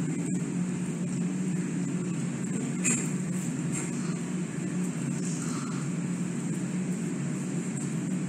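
Steady low background hum with a faint high hiss, even in level throughout, and a faint click about three seconds in.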